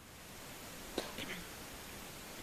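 Faint steady hiss of a remote caller's audio line opening up, with a click and a faint murmur of a voice about a second in.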